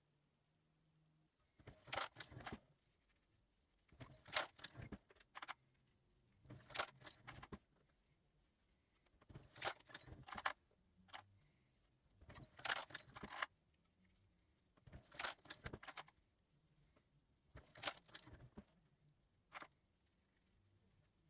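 Brass rifle cases clinking and rattling against the metal of a single-stage reloading press and against each other, in seven short bursts about every two and a half seconds, as case after case is run through the press for resizing.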